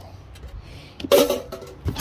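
Items being handled and shifted in a cardboard box: faint rustling and small knocks, with a short spoken word about a second in and a sharp click near the end.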